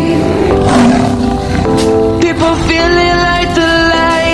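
Backing music of a song, with a lion's roar sound effect over it about half a second in.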